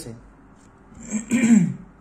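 A man clears his throat once, about a second in: a short, rough sound with a falling pitch.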